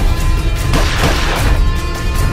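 Action-trailer score with a heavy, steady low rumble. A crash-like sound effect swells up about three-quarters of a second in and fades by a second and a half.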